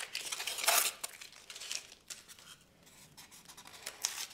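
Blue tape being peeled and torn off glued pieces of foam board: a few scratchy tearing and crinkling sounds in the first two seconds, the loudest about half a second in, followed by faint handling.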